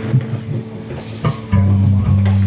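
Electric bass guitar sounding a low note that starts about a second and a half in and rings on steadily, after a stretch of quieter, scattered plucked guitar notes.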